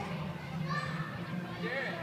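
Background voices of visitors, with children's high-pitched calls twice, over a steady low hum.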